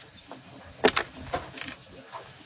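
Handling noise close to the phone: about four sharp clicks and rattles in the second half, as the phone and things near it are knocked about while she moves.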